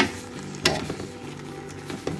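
Wooden spoon stirring pomelo peel and granulated sugar in a metal pot, a gritty scraping, with two sharp knocks of the spoon against the pot: one at the start and one about two-thirds of a second in.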